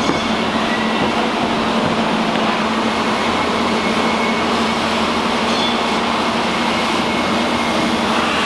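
Loud, steady rushing din with a low steady hum underneath, the sound of a large fabrication shop's ventilation fans and machinery.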